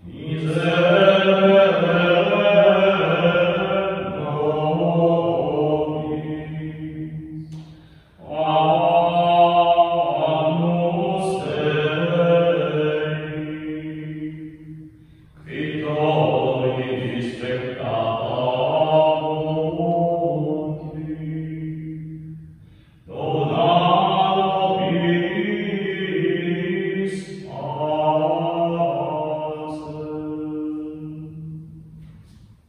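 Liturgical chant at Mass: a man's voice singing a prayer text on a nearly level reciting tone, in four long phrases of about seven seconds with short breaks for breath between.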